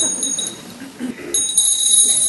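A high-pitched bell ringing twice: a short ring of about half a second at the start, then a longer steady ring that starts about a second and a third in.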